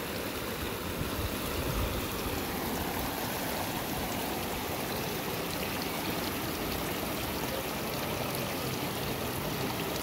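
Stream water running steadily over rocks and a small cascade into a pool.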